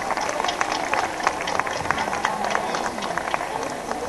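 Audience applauding: many hands clapping irregularly at an even level.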